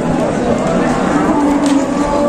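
A young bull mooing once, a single steady call of about a second, over the chatter of a crowd.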